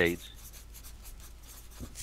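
The tail of a spoken word, then a low, even background hiss with a few faint ticks.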